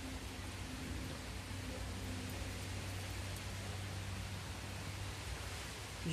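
Steady background hiss with a faint low hum underneath, unchanging throughout, with no distinct event standing out.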